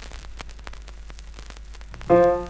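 Surface noise of an old 78 rpm record with the stylus in the lead-in groove before the music: a steady hiss dotted with frequent crackles and pops, over a low hum.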